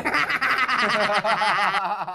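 High-pitched cartoon-voice laughter from Orange and Pear, a quick run of laughs that cuts off just before the end.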